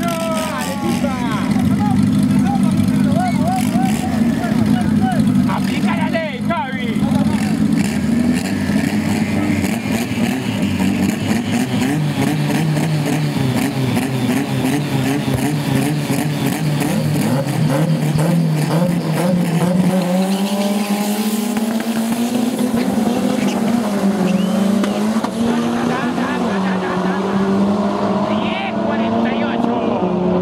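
Drag-race car engines running at the start line, revving up and down, then launching and accelerating hard down the strip with rising engine pitch about two-thirds of the way in. A voice talks over them.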